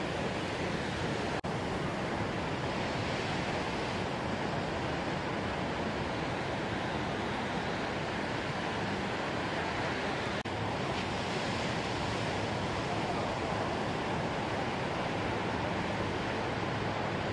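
Heavy ocean surf, a steady rush of breaking waves, broken by two momentary dropouts about one and a half and ten and a half seconds in.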